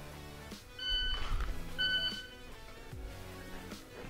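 Shot timer beeping twice, a second apart: the start beep and then the par-time beep for a dry-fire draw. Background music plays underneath.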